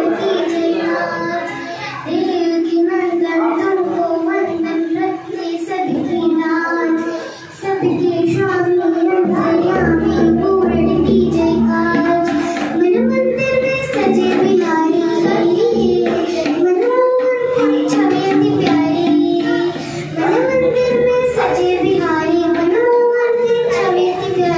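A young girl singing solo into a handheld microphone, holding long notes that step up and down in pitch.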